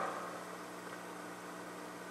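Faint steady electrical hum with a soft hiss: the background noise of the church's microphone and sound system during a pause in speech.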